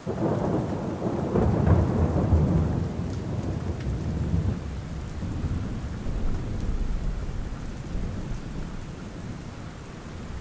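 Thunderstorm: a peal of rolling thunder that starts right away, is loudest over the first few seconds and slowly dies away, over steady rain.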